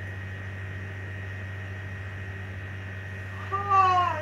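A steady low hum throughout, then near the end a short, loud pitched call that glides down in pitch.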